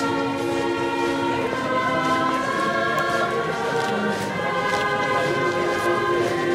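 A choir singing slow sacred music in long held chords, the harmony changing every second or two.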